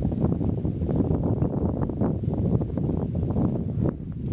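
Wind buffeting the microphone: a loud, steady low rumble with rapid flutter.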